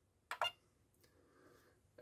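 A short, faint electronic beep from the ToolkitRC M6DAC charger about half a second in, as the button press confirms the start of a LiPo charge.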